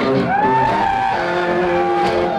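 Live band music led by an electric guitar holding long notes that are bent up in pitch and sway back down.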